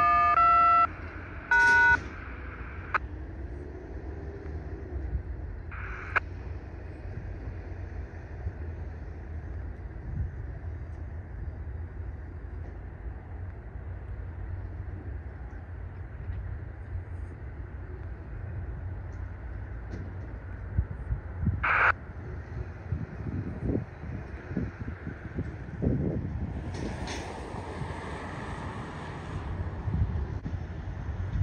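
Distant freight train rolling past, a steady low rumble with wind on the microphone. Two loud blasts of a multi-tone chord sound in the first two seconds, and a thin high hiss joins in near the end.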